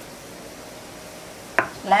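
Chili sauce simmering in a frying pan, giving a steady, soft bubbling sizzle. A woman's voice starts near the end.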